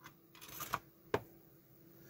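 Quiet handling of a small circuit board with a couple of light clicks from metal tools, the tweezers and screwdriver tip, touching the board and its switch pads. The second click, a little past the middle, is the louder one.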